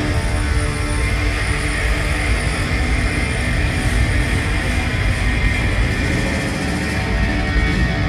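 Live instrumental rock: an electric guitar played through a loud amplifier, a Fender Stratocaster, with the band behind it, in a dense, sustained passage that keeps going without a break.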